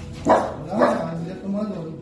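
Small dog barking twice, about a quarter second and just under a second in, as it jumps up at a person.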